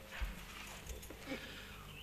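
Quiet room tone in a large hall, with a few faint, soft knocks.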